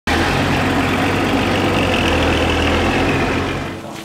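Large truck's engine idling, a steady low note, fading away near the end.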